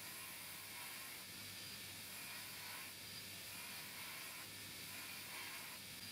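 Belt grinder running with a steady hiss over a low motor hum, the steel of an old file pressed against the belt in repeated grinding passes that swell and ease every second or so.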